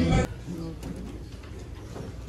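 Music with singing stops abruptly a quarter second in, leaving a low murmur of voices from the seated congregation in a church, with a few faint knocks.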